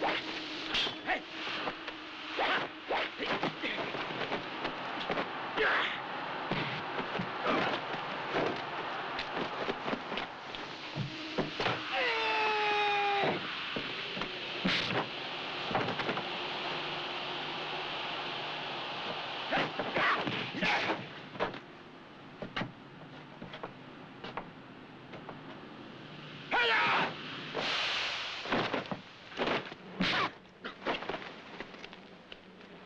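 Dubbed fight sound effects: a run of sharp blows and swishes, with fighters' shouts and grunts. A long cry comes about twelve seconds in, and more cries come near the end, over the steady hiss of an old film soundtrack.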